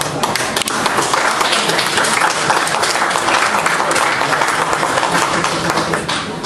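A hall full of people applauding, many hands clapping at once, with crowd chatter underneath.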